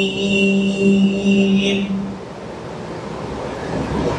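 A man's voice reciting the Quran through a microphone holds one long steady note, which ends about two seconds in. An unpitched rushing noise follows.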